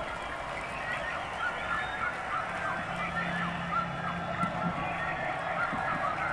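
A large concert audience cheering after the song, with many overlapping shouts and whistles.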